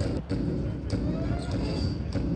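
Outdoor practice-field ambience: a steady low rumble on a body-worn microphone, with faint distant voices.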